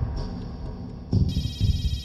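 Electronic phone ringtone, a high trilling ring that starts about a second in and runs for about a second, repeating in a ring-and-pause cadence, over a low, pulsing suspense music track.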